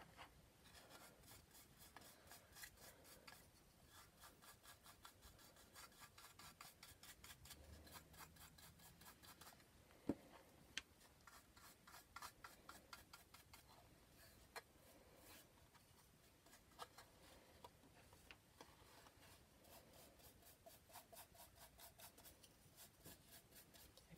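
Near silence, with the faint rub of a paintbrush stroking paint onto a small wooden box in quick repeated strokes and a few light taps.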